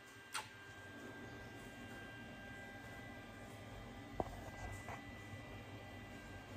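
Quiet room tone with a faint steady hum, broken by two short sharp sounds: one just after the start and one about four seconds in.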